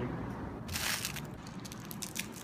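Crunching close to the microphone as a small snack is bitten and chewed: one loud crunch just under a second in, followed by a string of small crackles.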